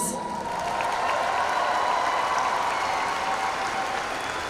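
A large audience applauding steadily in a big arena, an even wash of many hands clapping. A faint steady tone runs underneath and fades out near the end.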